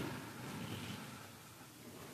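Quiet church room tone: a faint, even hiss, with a sound from just before fading out in the first moment.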